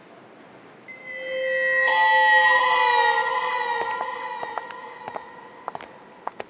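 Background music sting: sustained tones enter about a second in, swell with a high shimmering layer to a peak around two to three seconds, then fade away. A few sharp clicks near the end.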